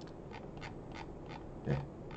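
About five soft clicks from computer controls, roughly three a second, as the slides are scrolled forward.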